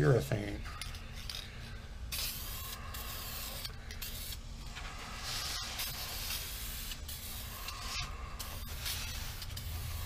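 Aerosol spray can of clear semi-gloss finish hissing in repeated bursts, with short breaks between sprays.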